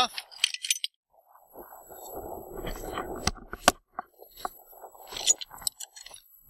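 Handling noises at a wooden chicken coop door: a rustling scrape lasting about a second and a half, then several separate sharp clicks and knocks of the wood and its metal latch hardware.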